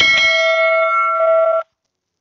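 Bell-ding sound effect of a subscribe-button animation: one bright chime of several steady tones rings evenly for about a second and a half, then cuts off suddenly.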